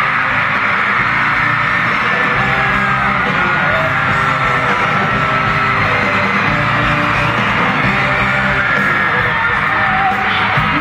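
Arena crowd screaming and cheering loudly over a live rock band playing, recorded from among the audience.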